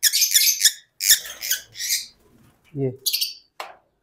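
Young lovebird chick squawking while held in the hand: a rapid run of short, high-pitched, scratchy calls in the first two seconds, and a few more near the end.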